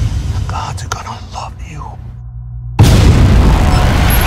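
Horror trailer sound design: a woman's short distressed cries over a dark low drone. Then, just under three seconds in, a sudden loud boom hits and a dense, loud roar carries on after it.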